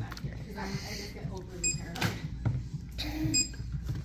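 Checkout barcode scanner giving a short high beep about one and a half seconds in and a fainter one near three and a half seconds, as items are scanned, with a knock of a box on the counter in between and low voices underneath.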